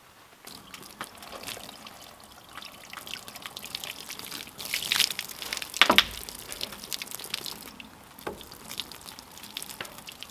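Water trickling and splashing from the spigot of a plastic water jug while cookware is rinsed under it, with scattered clinks and knocks; the loudest knocks come about five to six seconds in.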